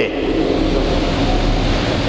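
Steady rushing background noise with a low hum underneath.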